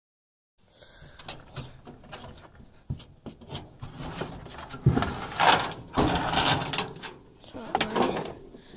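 Handling noise, starting about half a second in: uneven knocks, scrapes and rustling, loudest from about five to six and a half seconds in.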